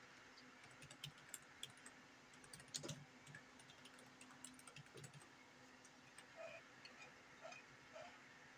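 Faint, irregular keystrokes of typing on a computer keyboard, over a steady low hum.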